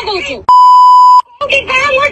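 A loud censor bleep, one steady high tone lasting under a second, cuts into a woman's heated speech in a recorded argument, blanking out a word, likely a swear word, before the talk resumes.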